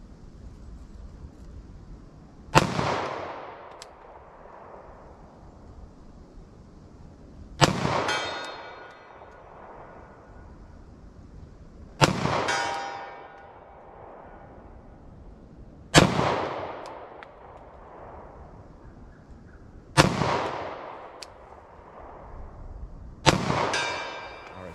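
Six slow, deliberate pistol shots from a Glock 41 firing .45 ACP +P hollow points, about four to five seconds apart, each echoing off the wooded hillside. After some shots, a faint metallic ring follows as the steel target is hit.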